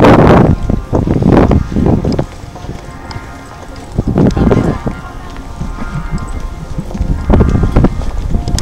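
Wind buffeting the camera microphone for the first two seconds or so, then a quieter background of faint music and people's voices.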